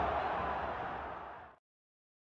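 Football stadium crowd noise from the match broadcast, a steady murmur that fades out and stops completely about a second and a half in.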